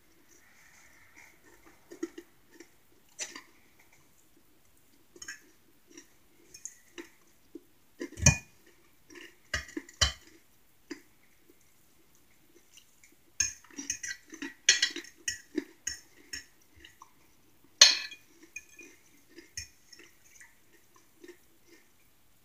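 A metal fork clinking and scraping on a plate while food is eaten, with close chewing and mouth sounds between the strokes. The sharpest clinks come about eight, ten and eighteen seconds in, with a cluster around fourteen to fifteen seconds.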